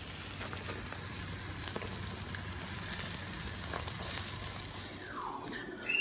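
Burger patties sizzling on a barbecue grill: a steady crackling hiss that stops shortly before the end.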